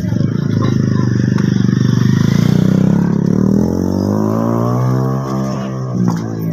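An engine running with a steady pulsing beat, then rising in pitch over two or three seconds as it speeds up.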